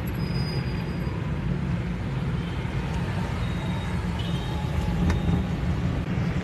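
Steady low rumble of engine and road noise heard from inside a moving vehicle's cabin, with a faint click about five seconds in.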